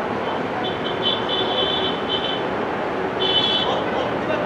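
Steady outdoor background noise at an open ground. Twice, a high-pitched trilling whistle sounds over it: once for about two seconds starting near the beginning, and again briefly near the end.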